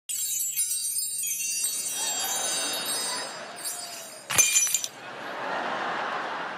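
Bright, shimmering chime-like tones, followed by a sharp glassy clink with a ringing tail about four seconds in, over crowd noise from the audience.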